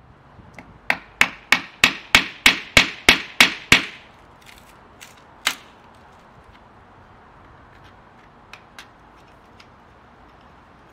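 A hand hammer striking about ten quick, even blows, roughly three a second, then one more blow a couple of seconds later and a few light taps near the end.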